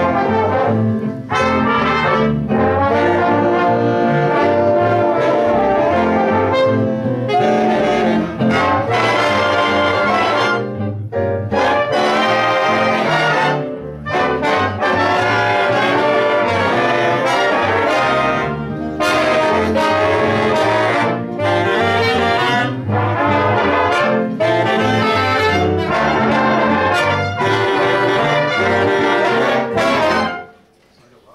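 Big band playing a jazz arrangement: saxophones, trombones and trumpets together, with electric bass and piano underneath.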